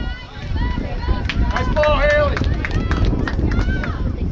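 Several voices calling out during a soccer game, short overlapping shouts with one longer held call about two seconds in, over a steady low rumble.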